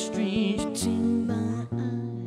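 Man singing into a microphone while strumming an acoustic guitar, a live unplugged song.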